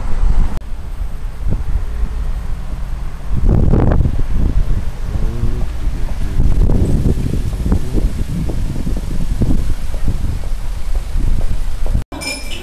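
Wind buffeting the camcorder's microphone in irregular low rumbling gusts, over street traffic with a car driving past. The sound drops suddenly about half a second in and comes back stronger about three and a half seconds in.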